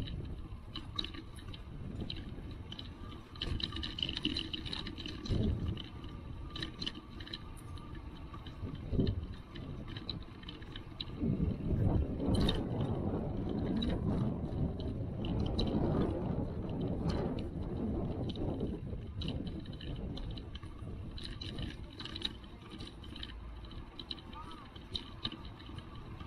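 Bicycle rolling over cobblestones: steady rumble from the tyres on the stones with many small rattles and clicks as the bike and its mounted camera shake, growing louder for several seconds in the middle.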